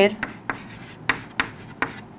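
Chalk writing on a chalkboard: a run of short scratching strokes, about five of them, as characters are written out.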